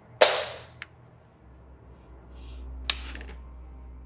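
A sharp, loud hand slap about a quarter second in, with a short noisy tail, then a second, softer slap a little before three seconds in.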